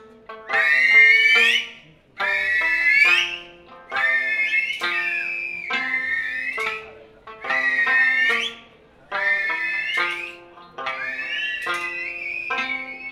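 Okinawan eisa folk music: a sanshin plucking short melodic notes under a high-pitched voice singing repeated phrases of a bit over a second each, with brief dips between them.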